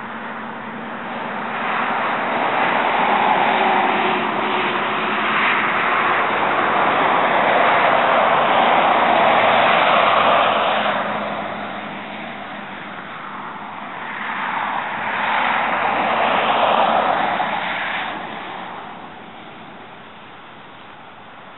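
Road traffic passing close by on a highway: tyre and engine noise that swells up and fades away twice, first a long pass lasting several seconds, then a shorter one near the end.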